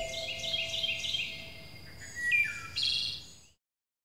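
Birdsong, a quick run of short, quiet chirps, laid as a sound effect under an animated logo intro. It cuts off abruptly about three and a half seconds in.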